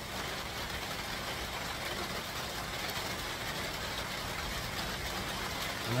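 Steady low background hum and hiss with no distinct events.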